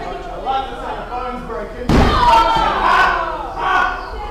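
One hard slam on the wrestling ring canvas about two seconds in, against crowd chatter, followed straight away by loud shouting.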